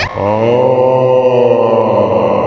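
A single long, deep chanted vocal drone, of the sustained "om" kind. It settles onto one steady note just after it begins.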